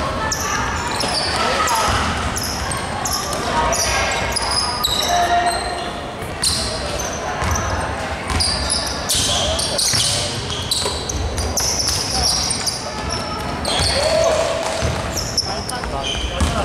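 A basketball being dribbled on a hardwood court during play, with many short high sneaker squeaks and players' voices calling out, all echoing in a large sports hall.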